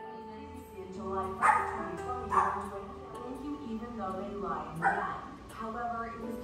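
A dog barking, about three loud barks a second or more apart, over soft background music.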